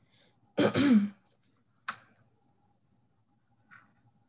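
A person coughs once, a short voiced cough of about half a second. About a second later comes one brief sharp click.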